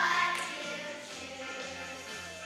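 A children's choir singing with instrumental accompaniment; the voices drop away about a second in, leaving the quieter accompaniment.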